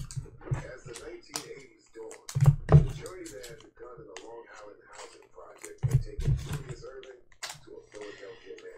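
Irregular light clicks and handling noises across a tabletop, with low thumps about two and a half seconds in and again about six seconds in. A faint, muffled voice runs underneath.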